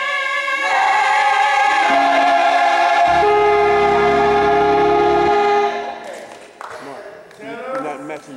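Choir singing and holding a long sustained chord with a steady low bass note underneath; the chord is cut off together about six seconds in, leaving scattered talking voices.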